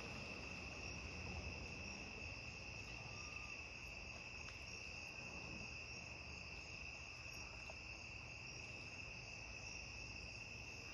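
Crickets chirping: a faint, steady high-pitched trill, with a second, higher chirp repeating at a regular pace above it.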